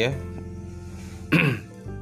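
Soft background music with steady tones runs under a man's voice, which says a short "ya" at the start and then clears his throat once, briefly, a little past halfway.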